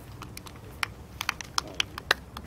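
Scattered sharp clicks at an irregular pace, coming more often near the end.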